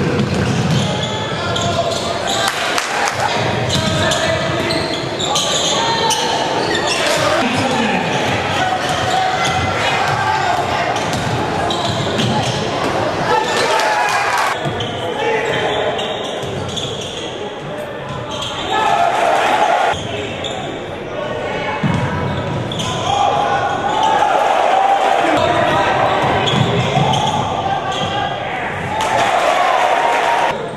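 Basketball game audio in a large gym: a ball dribbling on the court amid a steady wash of players' and spectators' voices echoing in the hall. There is a louder stretch about two-thirds of the way through.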